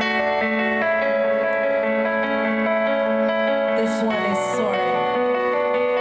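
Band music with guitars playing long held notes, no singing; the notes change about a second in and again about four seconds in.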